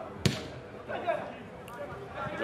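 A football kicked once, a single sharp hard thud about a quarter second in, followed by faint voices.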